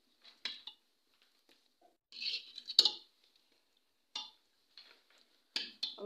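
A metal ladle stirring boiling butter in a steel pot, making short scrapes and clinks against the pot with a sharp clink near the middle. The stirring keeps the boiling butter from rising and boiling over while it is cooked down to ghee.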